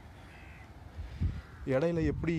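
A bird calling faintly over outdoor background hiss, then a man's voice starts up near the end.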